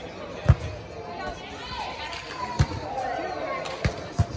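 A volleyball struck by players' hands three times in a rally: sharp slaps, the first the loudest, then two more about two seconds and one second apart. Players' voices call out between the hits.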